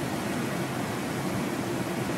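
Steady, even hiss of room tone, with no distinct events.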